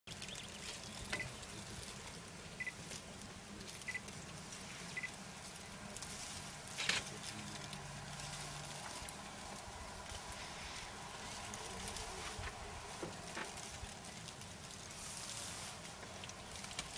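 Faint rustling and crackling of dry grass as elephants pull it up with their trunks and feed, with scattered clicks and a few short, high chirps in the first few seconds.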